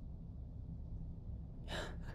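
A man's sharp breath in near the end, over a faint low steady hum.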